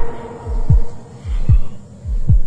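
Soundtrack heartbeat effect: deep thumps that fall in pitch, about one beat every 0.8 s, each a soft beat followed by a stronger one, over a steady hum.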